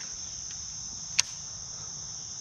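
Steady high-pitched chorus of insects in late-summer shoreline trees, with one sharp click just past halfway through.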